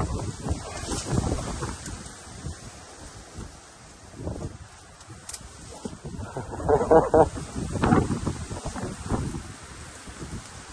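A man grunting and straining as he hauls a heavy adventure motorcycle around by hand in thick brush, with the vegetation rustling; the loudest efforts come about seven and eight seconds in. Wind buffets the microphone.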